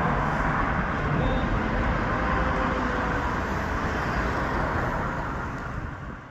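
Road traffic going by in a steady roar, fading away near the end.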